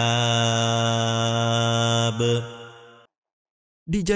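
A male Quran reciter holds one long, steady note on a verse's final drawn-out vowel, then lets it fade out about three seconds in. After a moment of silence, a man starts speaking right at the end.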